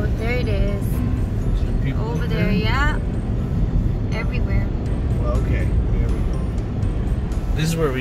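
Steady low road and engine rumble heard from inside a moving car, with background music and a voice over it in short stretches.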